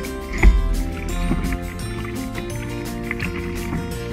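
Background music with a steady beat. About half a second in there is one loud low thump.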